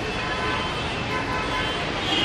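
Busy street noise: steady traffic and the voices of a crowd.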